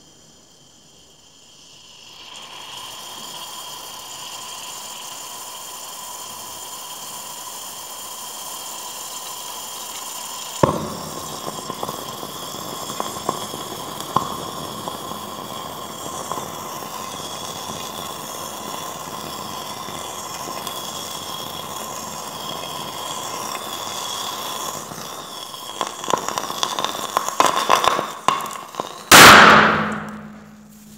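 Sodium metal reacting with water in a beaker, giving off hydrogen with a steady fizzing hiss, a sharp crack about a third of the way in, and scattered pops. The hydrogen catches fire, the crackling builds, and near the end the sodium bursts with one loud bang that splashes the liquid out of the beaker.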